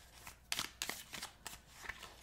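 A tarot deck being shuffled by hand: a quick run of short, faint card flicks and rustles starting about half a second in.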